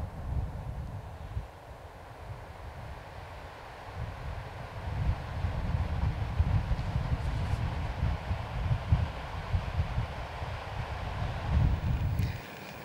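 Wind buffeting the microphone: a low, gusty rumble that swells and eases, quieter a second or two in and stronger through the second half.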